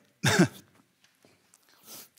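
A man clears his throat once, a short loud rasp into a handheld microphone, his throat dry; a few faint clicks follow.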